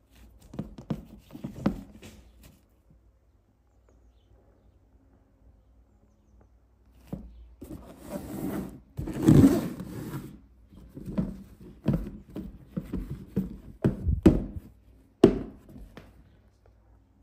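Nike Air Huarache sneakers being handled close to the microphone: rustling of the shoe fabric and rubber, with several short dull knocks as the shoes are turned over and set down. The rustle is longest in the middle, and a few sharper knocks come near the end.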